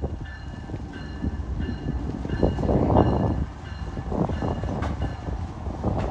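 CSX ES44AC-H diesel locomotive approaching on the bridge, its engine rumble growing louder. A high ringing tone repeats steadily about every half second to a second, typical of a locomotive bell.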